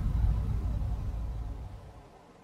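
Low, even rumble that fades away over the two seconds, most likely the rumble sound effect laid under the show's title card.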